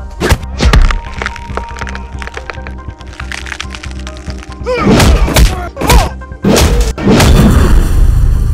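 Film fight-scene sound: a rapid run of punch and kick impact effects, thuds and whacks, over background music, with a man's shouts about five and six seconds in. The music swells loud near the end.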